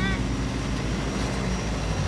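Ice cream truck's engine running at low speed as the truck pulls in close by, a steady low drone.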